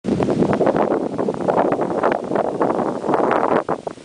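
Wind buffeting the camcorder's microphone: loud, gusty rumble and rush that dips just before the end.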